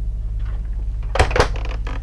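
Two knocks about a fifth of a second apart, a little over a second in: the doors of a motorhome's wood-panelled double-door refrigerator being shut. A steady low hum runs underneath.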